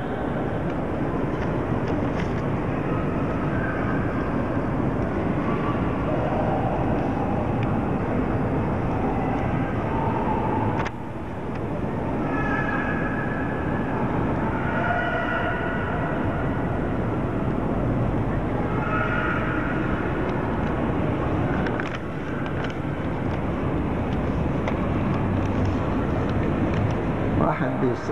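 A large hall audience murmuring and talking among themselves, a steady crowd noise with scattered voices.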